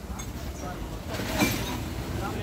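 Steady low rumble of road traffic with faint voices. A single short sharp noise about one and a half seconds in stands out as the loudest moment.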